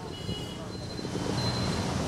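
Steady outdoor street noise with passing traffic, picked up by a reporter's microphone on a live feed.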